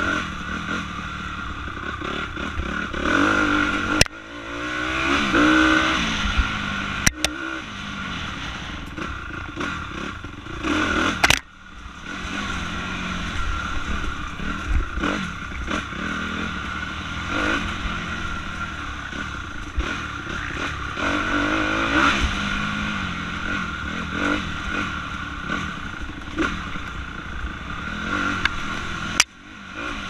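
Honda CRF250R single-cylinder four-stroke dirt bike engine revving up and down while being ridden along a trail. A few sharp knocks punctuate it, at about 4, 7, 11 and 29 seconds.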